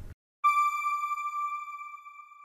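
A single electronic tone, a logo sting, starting about half a second in, held steady and slowly fading away.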